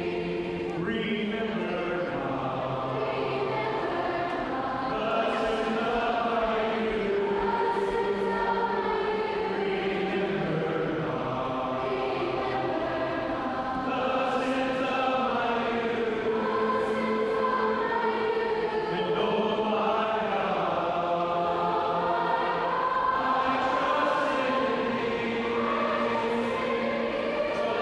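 A large crowd singing a praise song together, many voices holding long notes that move up and down in pitch, filling a tall open atrium.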